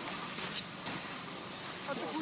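Cross-country skis sliding over snow: a steady hiss of skis and poles in the snow, with a few faint crunches as the skiers stride past.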